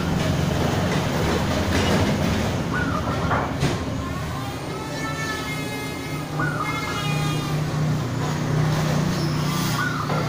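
Zebra doves (perkutut) giving a few short coos over steady traffic noise, with a vehicle passing by in the middle.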